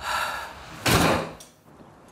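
A door swinging and then slamming shut about a second in, the slam being the loudest thing.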